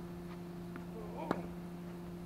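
A tennis ball struck once, a sharp pop about midway through, over a steady low hum.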